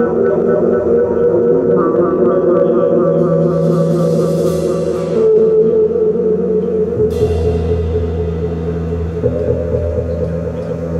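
Opening of a percussion ensemble's show: sustained low chords under a repeating higher note, with a rising cymbal roll that is cut off sharply about five seconds in and a cymbal crash about seven seconds in that rings away.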